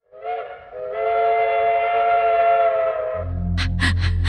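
Steam train whistle sounding a chord of several tones: a short blast, then a long steady one. About three seconds in, music with a deep bass and a regular beat comes in over it.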